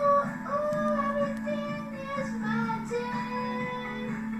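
A song: a high voice singing a melody of long held notes over a steady backing accompaniment.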